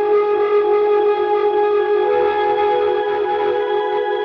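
Electric guitar played through a Strymon BigSky reverb pedal: held notes ring on and blur together in a long, ambient reverb wash, with new notes sounding about halfway through.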